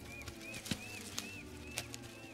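Film jungle ambience: a short, high, arching chirp repeats about three times a second over a low steady hum. A few sharp snaps of footsteps through undergrowth come through it.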